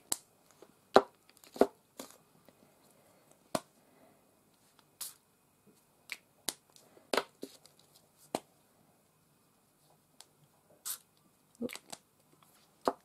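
Small mini mister spray bottles loaded with thinned acrylic paint, spritzed onto a canvas in about a dozen short, sharp puffs at irregular intervals.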